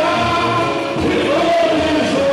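A samba-enredo sung live: a male lead singer on a microphone with many voices singing along, over samba percussion with a regular low drum pulse and cavaquinho.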